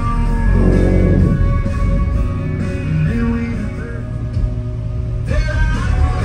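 Rock music with singing and guitar played loud through a truck's aftermarket audio system, with heavy bass from two Sundown E-series 8-inch subwoofers in an under-seat box. The upper range thins out for about a second near the end, while the bass carries on.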